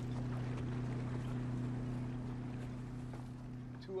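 Steady low hum of a boat's engine with a soft background wash, from the film's soundtrack.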